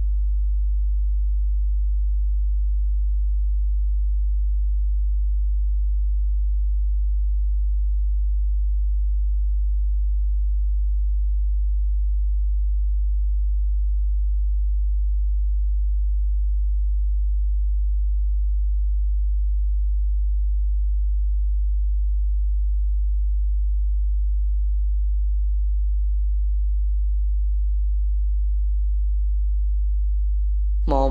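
A steady deep hum: one low, unchanging tone that holds at the same loudness throughout, with nothing else over it.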